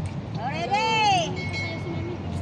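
A woman's high voice calling out one drawn-out note that rises and then falls in pitch, over a low, steady rumble of city traffic.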